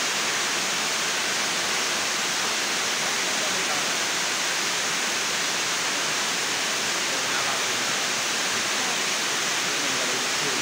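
Rain falling steadily, an even, unbroken hiss.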